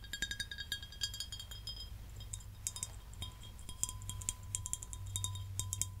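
Fingertips and nails tapping a glass bottle, each tap a short bright clink that rings briefly. From about halfway, the tapping becomes quicker, finer clicking and scratching at the bottle's screw cap.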